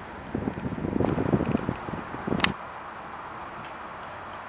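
Wind buffeting the camera microphone in irregular low rumbling gusts, ending in a single sharp click about two and a half seconds in, after which only a faint steady outdoor hiss remains.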